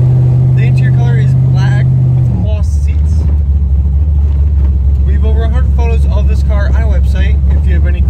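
1976 Chevrolet Corvette's small-block V8 pulling steadily, heard from inside the cabin while driving. About two seconds in the engine note drops sharply as the automatic transmission upshifts, and it then runs on at lower revs.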